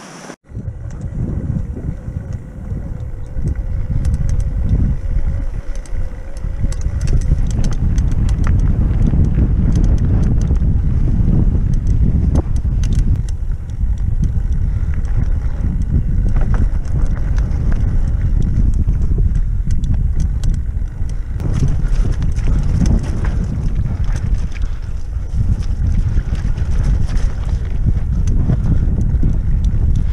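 Wind buffeting the microphone of a helmet-mounted camera as a mountain bike rolls along a rough, stony trail, with rattles and knocks from the bike and its tyres over the stones. The low rumble grows louder over the first several seconds as the bike picks up speed.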